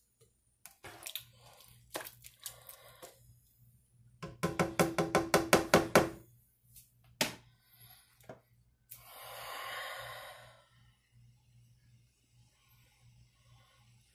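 A spoon stirring rice mix and water in a nonstick skillet: scattered clicks and scrapes, then a quick run of about ten ringing knocks against the pan, roughly five a second. A soft rushing noise follows about nine seconds in.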